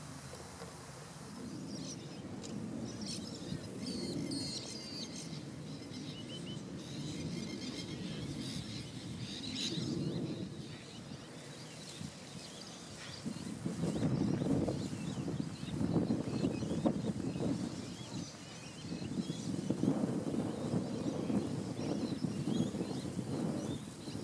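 Outdoor ambience of birds chirping and calling, with a low rushing noise that swells several times in the second half.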